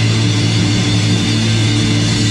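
A punk rock band's amplified electric guitars holding one loud, steady chord, with little or no drumming under it.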